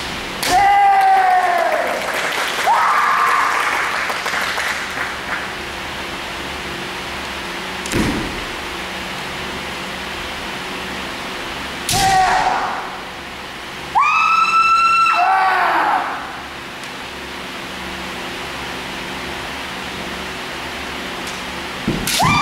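Kendo kiai: long, loud yells from fighters in a bout, four of them, the longest running about two seconds near the end. A few sharp cracks of strikes or stamps come in between, over a steady low hum.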